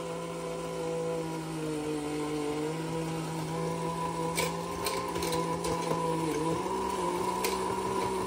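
1950s W Toys Japan Fishing Bears battery-operated bank's small electric motor and gear train whirring steadily as the mechanism works the fishing bear's rod, with a few light clicks in the second half. The toy is being run to loosen up its old grease.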